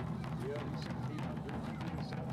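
Period rope-tensioned field drums beating as the drummers march, with people talking over them.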